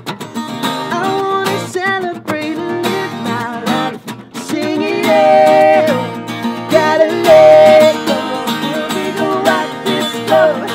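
A song performed on strummed acoustic guitar with singing, the voice holding long notes between shorter phrases.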